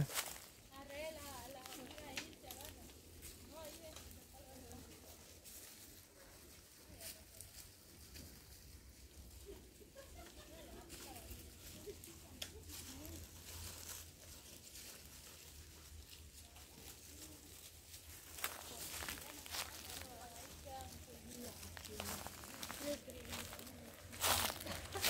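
Quiet outdoor ambience with faint distant voices, and a few sharp crackles of dry brush and twigs late on.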